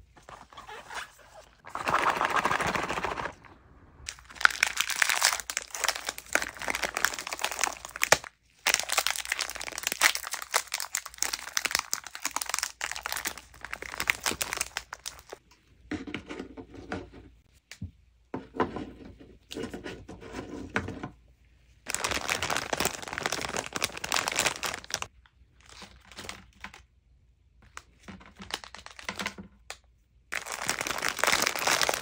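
Plastic snack packets crinkling and tearing open, in several long stretches with pauses between. Between them come light clicks as sandwich cookies and sweets are set into a wooden platter.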